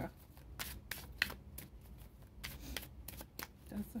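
A deck of tarot cards being shuffled by hand: a quick, irregular run of light card-on-card clicks and flicks.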